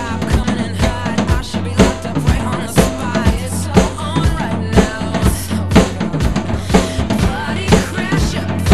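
Mapex drum kit with Sabian cymbals played in a steady rock beat, bass drum and snare hits on a regular pulse, over the recorded pop-rock song it is covering.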